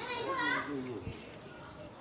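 A faint voice speaking in the background for the first half second or so, then a single soft low thump about a second in. After that it is quiet.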